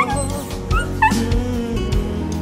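A small dog giving a few short, high yips over background music.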